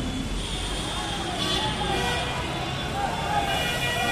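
A Tata state-transport bus running close by in a crowded street, its engine a low rumble most noticeable at the start, with scattered crowd voices.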